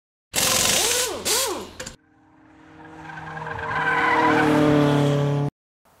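A car's tyres squealing with a warbling pitch for about a second and a half. Then a car engine at a steady pitch grows steadily louder for about three seconds and cuts off suddenly.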